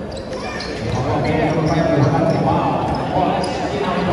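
Basketball being dribbled on an indoor court amid the voices and shouts of a crowd, in a large gym.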